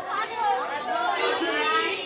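Schoolchildren chattering and talking over one another, several voices at once.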